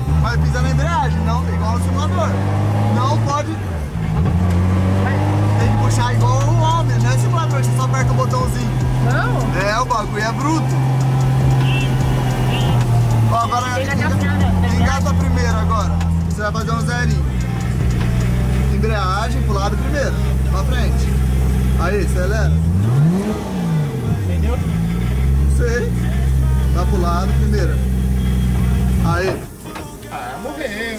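The drift car's forged 1JZ turbo straight-six running at low revs, heard from inside the cabin. Its pitch steps up and down as the throttle is eased on and off, with one quick rev up and straight back down about three-quarters of the way through. The engine note drops away just before the end.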